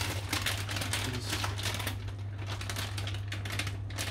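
Plastic packaging crinkling and crackling as a pack of sausages in a plastic bag is handled, a quick irregular run of small crackles, over a low steady hum.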